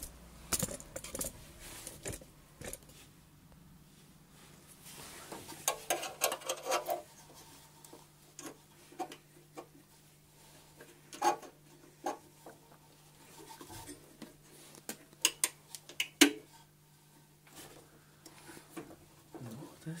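Small metal parts clinking and tapping as a thin wire and its spring fitting are worked by hand at the carburettor: a scatter of short sharp clicks with quiet gaps between, a few louder near the middle and after it.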